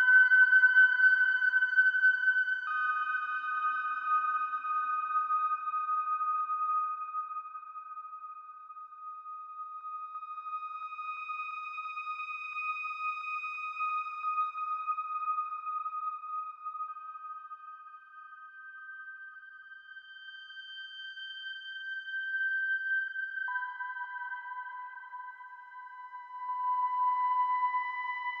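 Behringer ARP 2500 modular synthesizer sounding long, steady high tones that step to a new pitch a few times, over a faint hiss of filtered noise. It is loud at first, fades lower through the middle and swells again near the end.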